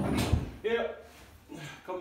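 Indistinct speech: short stretches of a voice, opened by a brief knock or clatter at the very start.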